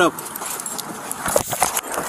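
Rustling and knocking of a close struggle against a body-worn camera, as officers pull a man out of a car. A shouted word opens it, and there are two short high sounds about halfway through.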